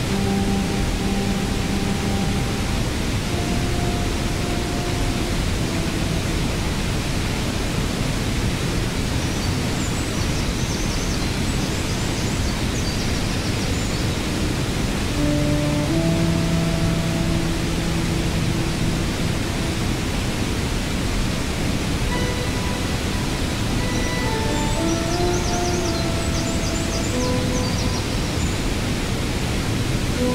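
Long held synthesizer notes, several sounding together, that change pitch every few seconds over the steady rush of a waterfall. Brief high chirping figures come in twice, about ten seconds in and near the end.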